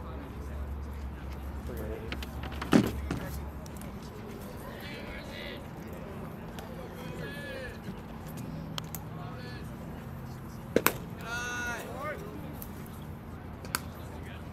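Sharp smacks of the ball in play at a baseball game: one loud smack about three seconds in, a quick double smack near eleven seconds and a lighter one near the end, with players' distant shouts and chatter in between.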